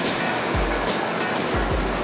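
Background music with a steady beat, over the steady rushing noise of a New York City subway G train pulling into the station.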